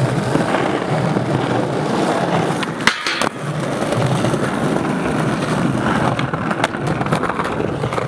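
Skateboard wheels rolling over a stone-tiled plaza, a continuous rough rolling noise with small clicks from the tile joints. A sharp clack about three seconds in, with the rolling briefly cut off before it resumes.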